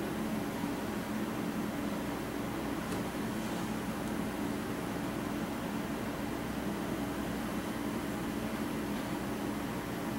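Steady low hum over an even hiss, of the kind a fan or air conditioner makes; it stays level throughout.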